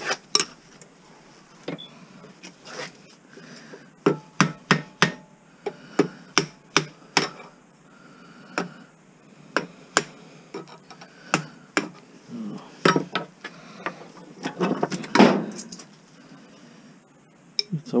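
Hammer blows on a small range hood fan motor held in a metal bench vise, knocking it apart for scrap: sharp metal knocks in irregular runs, sometimes two or three a second, with pauses between runs.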